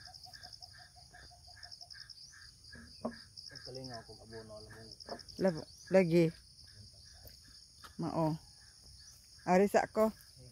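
Insects chirping steadily in fast high-pitched pulses, with a second, lower chirp repeating about three times a second during the first few seconds. Short bursts of people talking, louder than the insects, break in several times.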